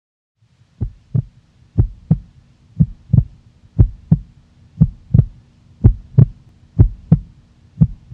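A heartbeat sound effect: paired low thumps, lub-dub, about one pair a second, over a steady low hum that comes in just before the first beat.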